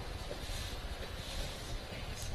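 Low, steady background noise: room tone with a faint low rumble and hiss, and no distinct event.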